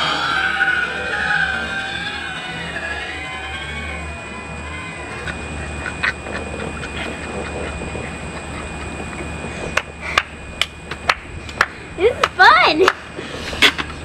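Laughter trailing off in the first few seconds. Near the end comes a run of sharp plastic clicks and snaps as the two halves of a toy watermelon are pressed back together, with a short vocal sound among them.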